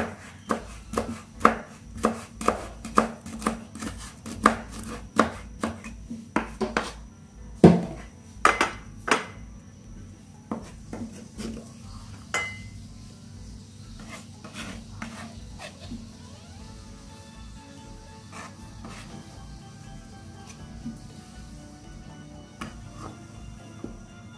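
A kitchen knife chopping herbs and a chili on a wooden cutting board, in quick regular strokes about three a second, with one louder knock about a third of the way in. The strokes thin out to a few scattered knocks, and faint background music fills the second half.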